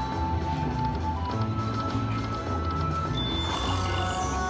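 Aristocrat Buffalo Gold slot machine's free-spin bonus music: held tones over a steady, galloping low drumbeat as the reels spin, with a rising swish about three and a half seconds in.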